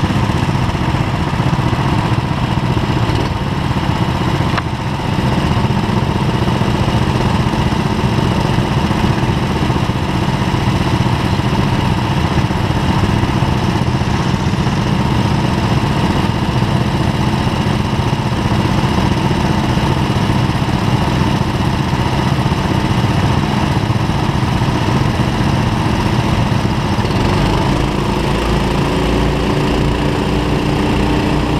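Go-kart engines running hard during a race, heard from on board a kart, with a steady engine drone and a brief dip about four to five seconds in. Near the end the pitch climbs as the kart comes off the turn onto the straight.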